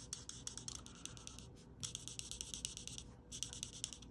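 Stampin' Blends alcohol marker scratching over cardstock in quick, short colouring strokes, pausing briefly twice.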